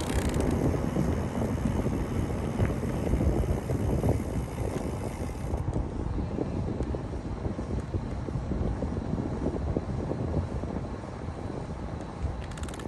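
Wind buffeting the microphone of a camera on a moving bicycle: a gusty, low rumbling rush that rises and falls throughout.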